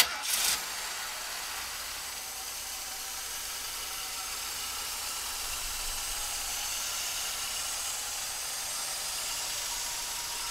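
1979 Lincoln Continental's 400 cubic-inch V8 running at a steady idle, heard from above the open hood, with a strong steady hiss over the engine note. There is a brief louder surge in the first half second as it settles.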